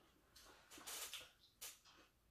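Faint crackling crunches of crispy deep-fried pork skin being cut with a knife: a cluster about half a second in, and one more short crunch near the end.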